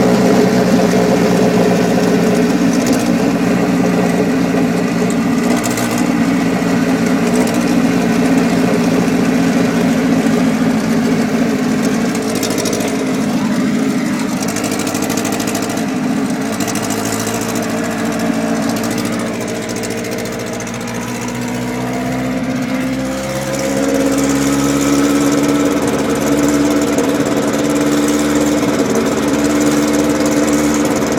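Ferguson P99 racing car's four-cylinder Coventry Climax engine running at low, steady speed close alongside. Its level dips about two thirds of the way through, then the pitch rises as it picks up again.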